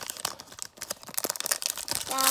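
Foil wrapper of a Pokémon trading-card booster pack crinkling and tearing as it is pulled open by hand, a run of irregular crackles.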